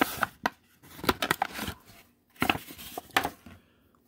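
Blind-bag packaging being handled and torn open: irregular crinkling crackles and sharp snaps with short pauses, as a small folded booklet is pulled out.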